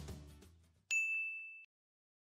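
Background music fading out, then a single bright ding sound effect about a second in, ringing for under a second before cutting off suddenly.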